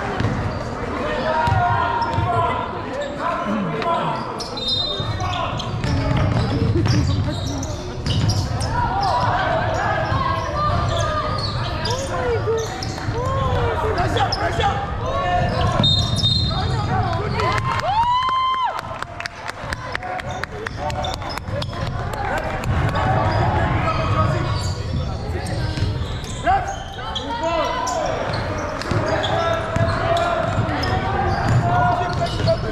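Sounds of a basketball game in a large indoor hall: a ball bouncing on the wooden court, sneakers squeaking, and players and spectators shouting.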